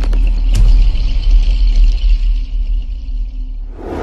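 Logo sting sound effect: a heavy, deep rumble with a thin high shimmer above it, a sharp click about half a second in, and a whoosh near the end as it fades.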